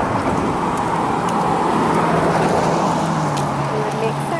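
Traffic on a wet street: tyre hiss from a car driving past, swelling to its loudest around the middle, with a steady low engine hum setting in about halfway through.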